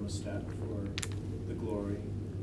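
A few light clicks and knocks on a table, the sharpest about a second in, as a plastic cup of water is set down on the wooden tabletop, over a steady low hum.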